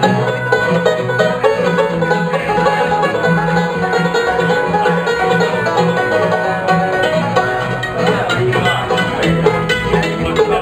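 Live bluegrass string band playing an instrumental passage with no singing: banjo, mandolin and acoustic guitar picking together over a steady, regular pulse of low notes.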